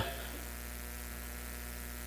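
Steady low electrical mains hum, with faint steady higher tones above it.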